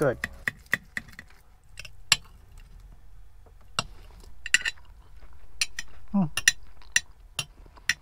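A spoon clicking and scraping against a food container while eating, in scattered sharp clinks, with a quick run of clicks in the first second as a seasoning jar is shaken over the food. A short "hmm" comes near the end.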